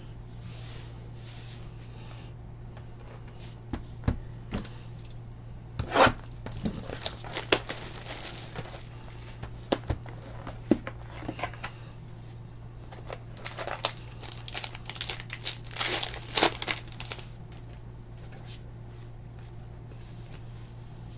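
Packaging crinkling and tearing as a trading-card box and pack are opened by hand, in two bouts of rustling separated by a short pause, over a steady low hum.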